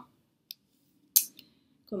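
A pause in a woman's speech with two short mouth clicks: a faint one about half a second in and a sharper one just past a second, as she searches for a word.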